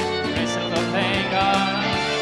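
Live band music: keyboard over a sequenced backing track with a steady drum beat, about four hits a second, in the closing bars of a rock-and-roll song.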